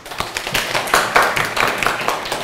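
A group of students clapping their hands, many quick overlapping claps. The clapping signals that their group has finished choosing a story title.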